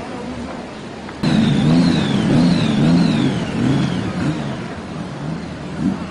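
Police motorcycle escort riding past: starting suddenly about a second in, a loud pitched sound rises and falls in pitch again and again, then fades near the end.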